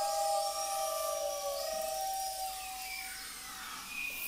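Experimental ensemble music blending instruments and whale sounds: several held tones that fade away by about three seconds in, with high gliding sweeps above them.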